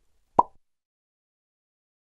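A single short, pitched pop sound effect for the animated logo, about half a second in.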